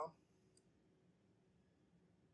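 Near silence: room tone, with the tail of a spoken word at the very start and one faint click about half a second in.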